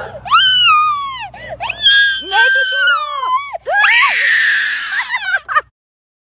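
A young boy screaming and wailing in several long, high-pitched cries, the one about four seconds in harsh and rasping, all stopping abruptly near the end. He is crying out in fright after poking a frog.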